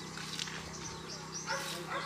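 A dog barking briefly about one and a half seconds in, over a steady low hum.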